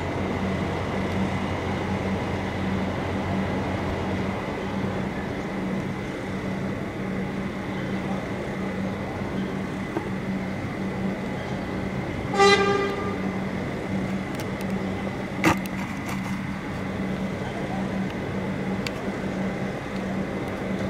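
Steady low engine hum over street noise, with one short vehicle horn toot about twelve seconds in and a single sharp click a few seconds after it.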